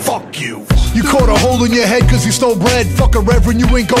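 Hip hop track: after a brief drop-out the beat comes back in with heavy bass, and a rapped vocal starts about a second in.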